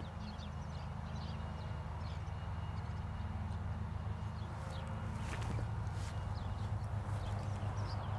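Quiet steady low hum, with faint short chirps higher up and a couple of soft knocks about five and six seconds in.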